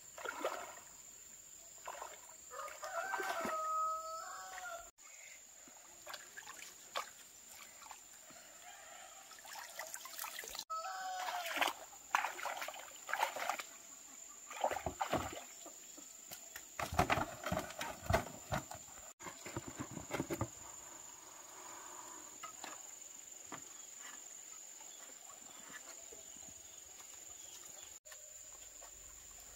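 Water splashing and sloshing in shallow muddy water as someone wades and gropes with hands and a hand net. A rooster crows once a few seconds in, and the splashing comes in quick bursts in the middle.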